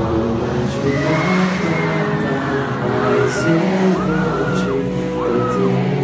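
Live sertanejo band playing an instrumental passage: steady held chords underneath, with a high lead line that slides up and down in pitch in short arcs.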